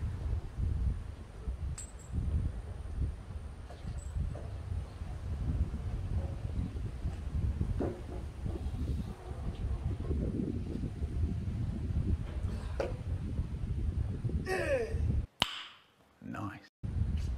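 The steel column of a two-post car lift being rocked and tipped over by hand, with scattered metal clinks over a steady low rumble. Near the end a short, loud burst of a voice with sliding pitch, then the sound cuts out abruptly.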